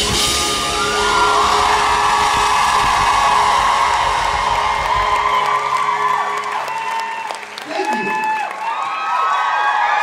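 Live rock band with drum kit playing loudly; the drums and bass drop out about five seconds in, and the audience whoops and cheers.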